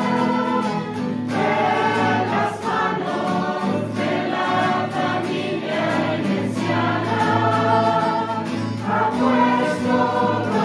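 A mixed choir of women's and men's voices singing a hymn together, accompanied by guitar.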